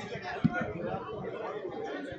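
Background chatter of a crowd, several people talking at once at a low level, with one short low thump about half a second in.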